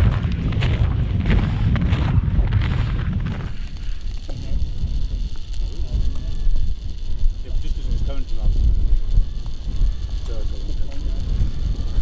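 Strong wind buffeting the microphone: a loud, low rumble that runs throughout, with sharper gusts in the first few seconds.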